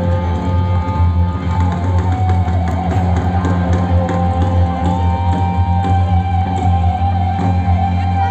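Live rock band music played loud over a concert PA, heard from within the crowd: long held notes over a heavy, steady bass, one of them bending up in pitch and back midway.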